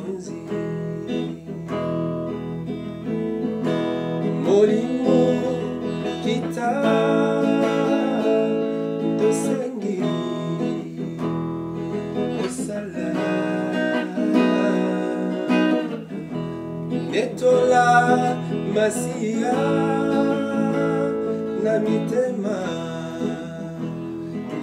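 Acoustic guitar played with strummed and plucked chords, with a singing voice over it.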